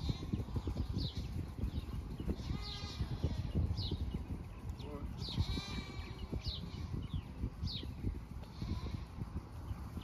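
Low rumble of wind on the microphone, with a bird repeating a short falling call about once a second. Two longer wavering animal calls come about two and a half and five seconds in.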